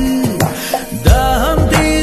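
Tamil film song playing: a voice sings over instruments and a beat, with a strong drum hit about a second in.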